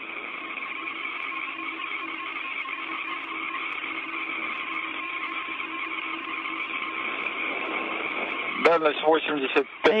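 Steady hiss of an open space-to-ground radio channel, thin and narrow-sounding, with faint steady hum tones in it. A voice comes on over the channel near the end.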